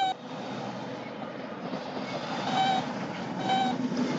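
Steady rumbling of big trucks passing, a cartoon sound effect mistaken for an earthquake, growing slightly louder. A cartoon robot's electronic beeps sound over it, once at the start and twice more near the end.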